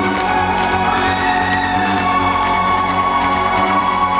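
Live electronic band music played loud over a concert PA and recorded from the crowd, with long held notes.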